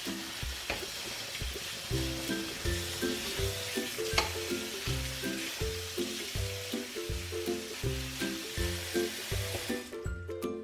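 Tap water running onto strawberries in a stainless steel mesh colander, a steady splashing hiss, with one sharp click about four seconds in.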